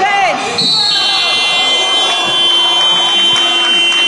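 Sports-hall game-clock buzzer sounding the end of the quarter: one long steady electronic tone starting about half a second in and holding on, with sneakers squeaking on the court just before it and voices around it.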